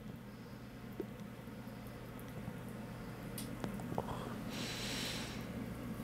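A man puffing quietly on a corncob pipe, with a few faint clicks of lips on the stem, then a soft exhale of smoke about four and a half seconds in, over a steady low hum in the room.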